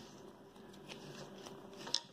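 Faint rustle and light ticks of two strands of twine being wound by hand onto a netting shuttle, with one sharper click near the end.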